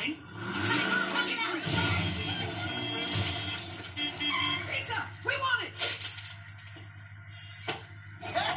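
Cartoon soundtrack playing from a TV: music under a low, steady monster-truck engine rumble, a horn honking, and a crashing, smashing sound. A brief cartoon voice calls "Excuse me, coming through."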